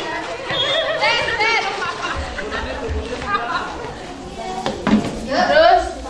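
Girls' voices calling out and chattering as they play, with a loud rising call near the end.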